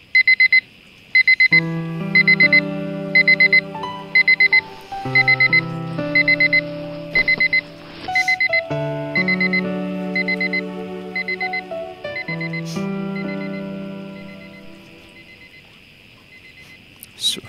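Digital alarm clock beeping in repeated short bursts of rapid high beeps, a burst a little under every second, growing fainter near the end. Soft background music of sustained chords comes in about a second and a half in.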